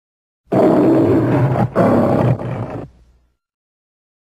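The MGM logo lion roaring twice, one roar straight after the other, starting about half a second in and dying away about three seconds in.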